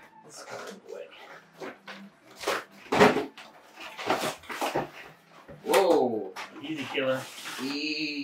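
Plastic shrink wrap on collectible boxes crinkling and tearing as it is peeled off, in a run of sharp crackles with the loudest about three seconds in. A few short, bending whines sound about six seconds in and again near the end.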